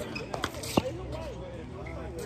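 Tennis ball impacts from racket strikes and bounces on a hard court. The ball is hit sharply about three-quarters of a second in, the loudest sound, after a fainter impact at the start.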